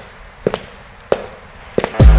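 Sharp, evenly spaced clicks, mostly in quick pairs, three times, over a faint hiss.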